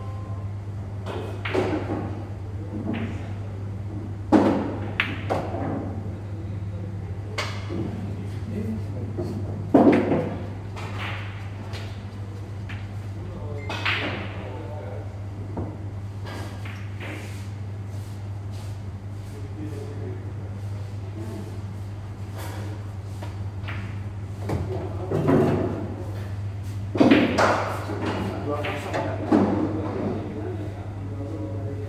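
Pool balls knocking: sharp clacks of cue on ball and ball on ball, about 4 s and 10 s in and several times near the end, ringing briefly in a large hard-walled hall. Under them runs a steady low hum, with indistinct voices.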